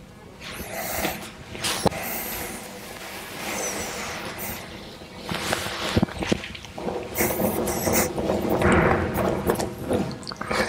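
Rustling and flapping of a barber's cape being pulled off and shaken out, with a few sharp clicks, loudest in the second half. Faint background music runs underneath.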